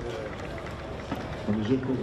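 A pause in a man's speech, filled only by a steady hiss of outdoor background noise. His voice starts again about one and a half seconds in.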